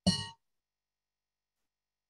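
A bell struck once: a metallic clang with a brief ring that fades within a fraction of a second. It is the kind of bell a Rotary meeting is called to order with.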